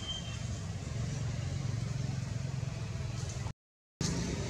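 Steady low engine rumble that cuts off abruptly into silence about three and a half seconds in.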